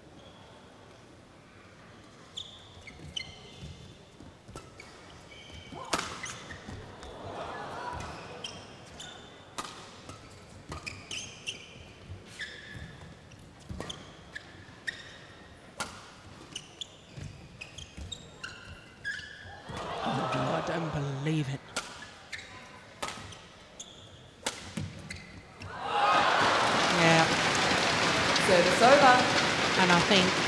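Badminton rally in an indoor arena: rackets strike the shuttlecock again and again, and players' shoes squeak on the court mat, with a brief burst of voices about two-thirds through. Near the end the rally finishes and the crowd breaks into loud applause and cheering.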